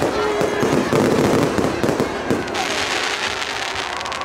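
Fireworks going off overhead: a dense run of bangs and crackles, with crowd voices underneath.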